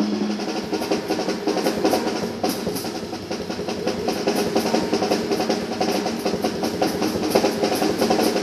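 Live jazz piano trio of piano, double bass and drum kit playing. Piano lines run over a steady pulse of cymbal strokes, with the drums prominent.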